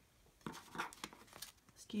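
Paper and card stock rustling and scraping in the hands as a folded paper gift pocket with envelopes tucked in and a stack of note cards are handled, in a few short separate rustles.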